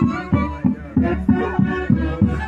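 Live orchestra playing Santiago festival dance music, with a steady low beat about three times a second under a melody line.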